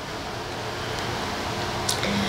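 Steady background hiss of room noise that grows slowly louder, with a small click near the end.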